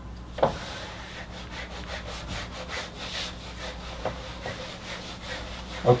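Marker pen writing on a whiteboard: a run of short scratchy rubbing strokes at a few per second, with a sharper tap about half a second in.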